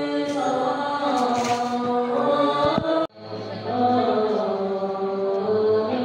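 Several voices chanting a Buddhist mantra together in long, held tones. The sound cuts out abruptly for a moment about halfway through, then swells back in.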